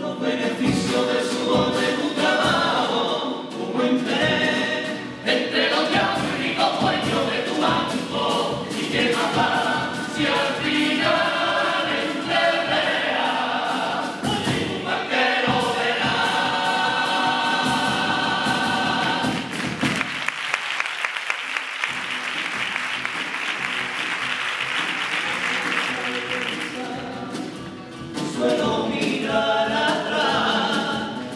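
Carnival comparsa chorus singing in multi-part harmony. About twenty seconds in the singing stops and the audience applauds for several seconds, then the chorus starts singing again near the end.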